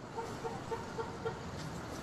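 Steady background noise laid under a textbook listening recording just before its dialogue starts, with a faint, quick series of pips over about the first second and a half.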